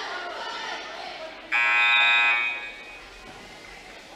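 Gym scoreboard horn sounding once for about a second, starting suddenly and then fading, over the chatter of a crowd.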